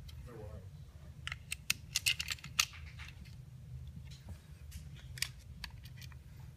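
Small sharp clicks and clacks of Ruger American pistol parts being handled during reassembly. A quick cluster comes about one to three seconds in, then a few scattered clicks.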